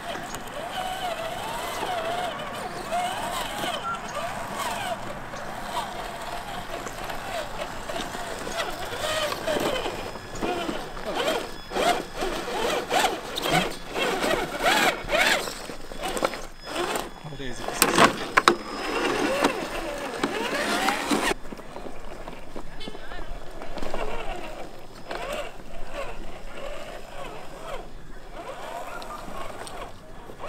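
Indistinct voices of people talking outdoors, with scattered clicks and knocks through the middle. The sound changes abruptly about 21 seconds in.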